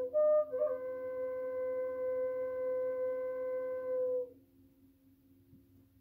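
Flute played slowly: a few short notes, then one long held note that ends a little past four seconds in. A faint low steady drone lies beneath.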